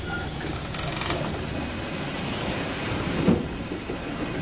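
Wright StreetLite DF single-deck bus running at idle at a stop with its doors open, a steady low hum. A few sharp clicks come about one and two and a half seconds in, and a thump a little after three seconds.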